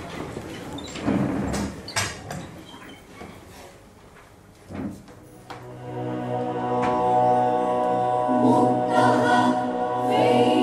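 Knocks and shuffling as people rise from their seats, then about five and a half seconds in the university anthem begins: a choir singing long, steadily held notes that grow louder.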